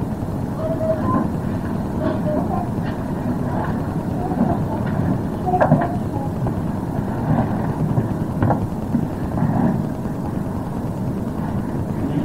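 Loud, steady low rumble with faint, indistinct voice fragments and a few brief clicks, on a recording ripped from an old cassette tape.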